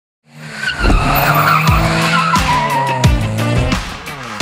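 Car sound effects, with tyres squealing and a motor running, laid over music with a heavy beat that thumps about every two-thirds of a second as a show's intro sting.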